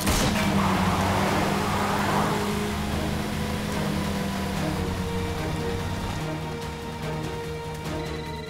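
Tense background music with sustained low tones, laid over the noisy rumble of a car driving on a dirt road; the road noise swells in the first couple of seconds, then the music carries on more evenly.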